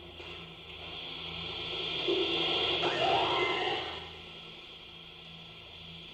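A cassette tape recording played back over steady tape hiss: a rough, noisy cry, claimed to be an eerie, guttural scream, swells about a second in, peaks with a wavering rise and fall around the middle, and fades out by four seconds.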